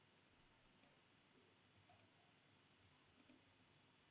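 Faint computer mouse clicks over near silence: a single click about a second in, then two quick double clicks about a second apart.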